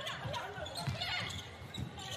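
Basketball bouncing on a hardwood court, a few irregular thumps, over the murmur of an arena crowd and players' voices.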